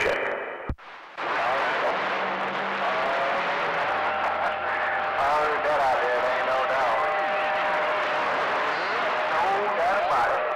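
CB radio receiver audio: a click under a second in, then steady band static with steady whistling tones and faint, warbling, garbled voices of distant stations.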